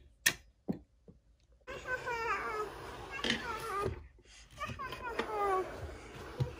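A plastic toy cannon's launcher is fired, making one sharp loud click followed by a couple of faint knocks. From about two seconds in, a child's voice carries on in unclear babble.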